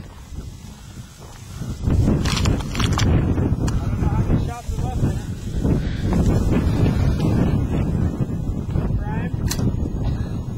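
Wind buffeting the microphone: a loud, uneven low rumble that sets in about two seconds in and continues, with faint voices behind it.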